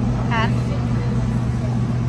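A steady low hum, even and unchanging, with a short spoken "Huh?" about a third of a second in.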